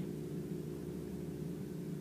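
Steady low hum with a faint hiss, unchanging throughout: the room's background noise.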